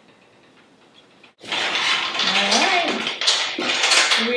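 Quiet room tone, then, about a second and a half in, the steady hiss of a covered pan steaming clams and mussels on a hot plate, with a woman's rising exclamation over it. A few light clinks near the end as the glass lid is lifted off the pan.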